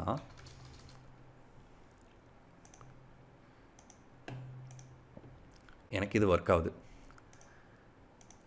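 Faint, sparse keystrokes on a computer keyboard, a few scattered clicks over several seconds, one of them a little louder about four seconds in.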